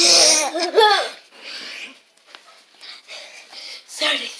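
A child laughing: a loud burst of laughter lasting about a second, then fainter, shorter bursts.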